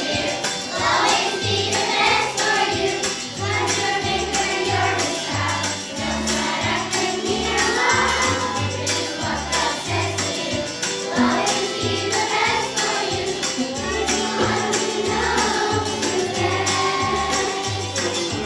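Children's choir singing a song over instrumental accompaniment with a steady, repeating bass beat.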